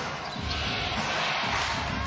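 Indoor arena crowd noise during live basketball play, with a basketball being dribbled on the hardwood court.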